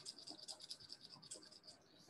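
Small capped jar of bicarb cleaning solution with metal jewellery charms inside being shaken by hand: a faint, quick run of light rattling ticks that stops shortly before the end.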